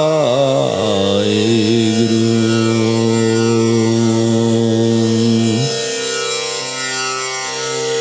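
Devotional mantra being sung: a voice slides through a few wavering notes, then holds one long note. About five and a half seconds in the held note drops away and a quieter sustained sound carries on until a short hiss of the next syllable at the very end.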